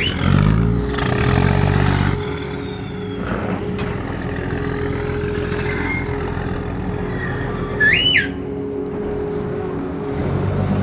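Orange-flag river ferry's engine running steadily at the pier, its pitch rising briefly in the first two seconds. About eight seconds in comes one short whistle blast that rises and falls, the crew's signal whistle.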